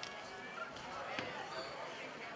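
Indistinct voices of players and spectators at a distance, with one short knock a little over a second in.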